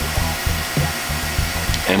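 Smoke machine firing, set off by its keychain remote: a steady hissing noise from the fogger as it puts out smoke.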